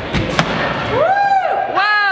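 Two thuds of sneakers striking a hollow wooden ramp as a child runs up it, then a child's voice calling out in a drawn-out rise and fall, with more calling near the end.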